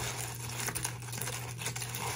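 Milk being poured onto dry cereal flakes in a plastic container, a steady hiss.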